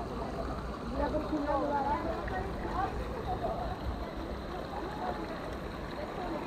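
Water running steadily through the start of a fibreglass water slide, with faint, indistinct distant voices over it.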